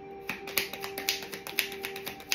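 A deck of cards being shuffled by hand: a quick run of sharp card snaps starting about a third of a second in, over background music with steady held tones.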